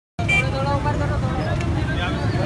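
Voices talking, cutting in abruptly, over a steady low rumble.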